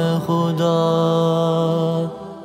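An unaccompanied man's singing voice holding one long note, the closing note of an Urdu nasheed. It breaks briefly just after the start and is then held steady at one pitch.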